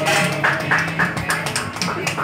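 A small group clapping hands together in a steady rhythm, about four claps a second.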